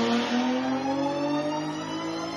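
Jaguar XJ coupé race car engine running hard under throttle, its pitch rising slowly and steadily.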